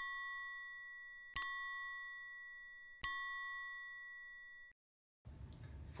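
A bright bell-like chime struck three times, about a second and a half apart, each strike ringing on and fading away.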